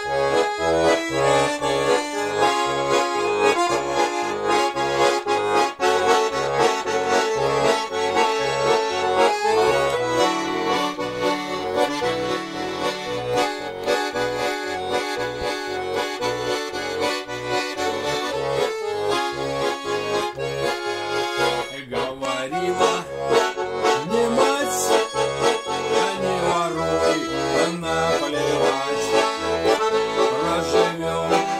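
Button accordion playing an instrumental introduction: a melody over a steady, alternating bass-and-chord accompaniment.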